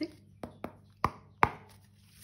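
A deck of tarot cards being handled, making four sharp taps or snaps, the last the loudest.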